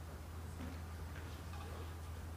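Quiet hall room tone: a steady low hum with a few faint, scattered ticks.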